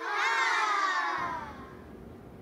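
A group of children cheering together, many voices sliding down in pitch at once and fading out about a second and a half in.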